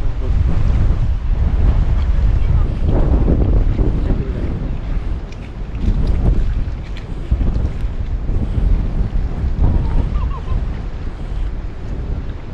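Wind buffeting the microphone: a loud, uneven low rumble, with faint distant voices now and then.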